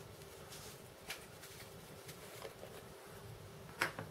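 Faint handling of a paintbrush and small plastic pigment jars over a cutting mat: a few light ticks and a sharper click near the end, over a faint steady hum.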